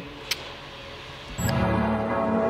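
A low hiss with one short click, then electronic music comes in abruptly about one and a half seconds in with sustained chords.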